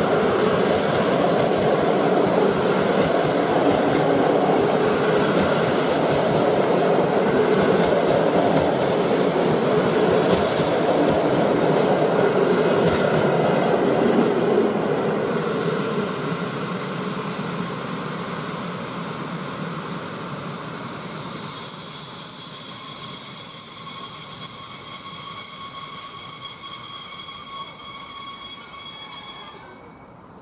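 A loco-hauled passenger train of coaches passing close with a loud, steady rumble of wheels on rail, fading about halfway as the last coach draws away. About two-thirds in, a high, steady squeal from the train's wheels sets in and runs until it cuts off abruptly at the end.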